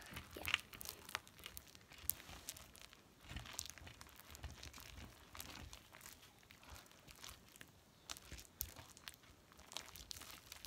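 Hands kneading, pressing and pulling sticky homemade slime on a tabletop, giving a faint, irregular run of small crackles and sticky clicks.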